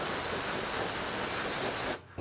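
Aerosol can of brake cleaner sprayed through its extension straw in one steady hiss, rinsing steel-wool residue off the end of a camshaft. The hiss cuts off abruptly as the nozzle is released.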